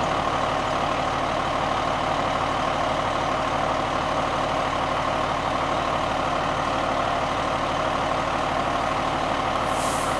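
Fire engine's diesel engine idling steadily, with a brief hiss near the end.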